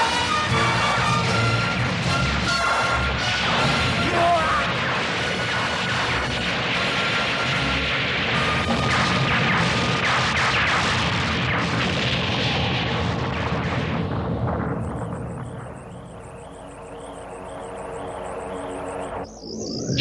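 Cartoon explosion sound effects, repeated booms and crashes as spaceships blow up, over dramatic background music. After about 14 seconds it drops to a quieter warbling high tone.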